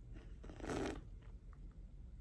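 A single short, faint sip of coffee from a glass, about half a second in.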